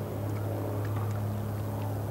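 A steady low hum with a faint hiss over it, unchanging throughout.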